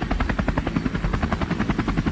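Helicopter rotor sound effect: the blades chopping in a rapid, even beat.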